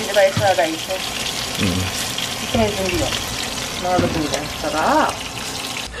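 Chicken nuggets frying in shallow oil in a frying pan: a steady sizzle, with a voice heard briefly now and then over it.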